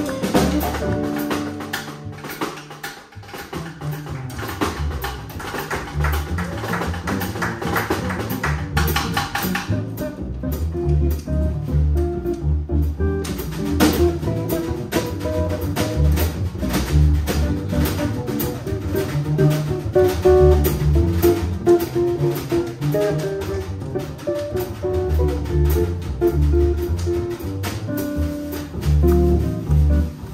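Live jazz combo: a guitar solo over upright bass and drum kit. The cymbals drop out for a few seconds about ten seconds in, then return.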